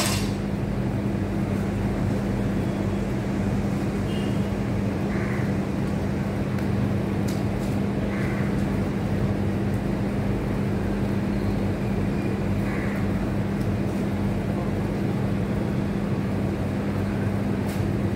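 Steady machine hum with one constant low tone over a low rumble, unchanging. A single sharp clank right at the start, as a loaded barbell is set down on the paving.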